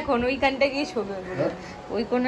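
A woman's voice speaking in short phrases, quieter in the second half.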